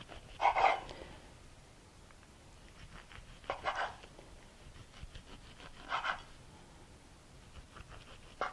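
Serrated knife sawing through a chilled, cream-cheese-filled flour tortilla roll on a wooden cutting board. It gives three short rasping strokes, a few seconds apart, one for each slice.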